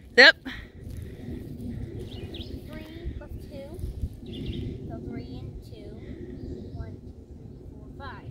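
Scattered short bird chirps and calls over a low, steady outdoor background.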